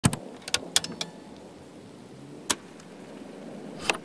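Scattered sharp clicks and knocks over a faint noisy background: several close together in the first second, one about two and a half seconds in, and a double click near the end. They are the sound-effect intro of an electronic track, before its keyboard chords begin.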